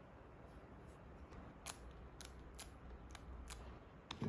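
Faint crackles and sharp ticks of a plastic screen-protector film being handled and smoothed onto an iPad's glass screen, five or so in the second half, over a low steady hum.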